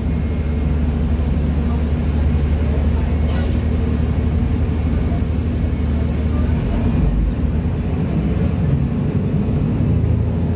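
Diesel engine of a Mercedes-Benz O-500U city bus with Bluetec 5 emissions and a Voith automatic transmission, running steadily with a deep, even hum and a brief change in its note about seven seconds in.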